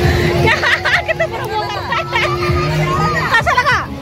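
Close-up chatter of children and adults crowding together, their voices overlapping in a busy hubbub. A steady humming tone runs underneath and stops a little after three seconds in.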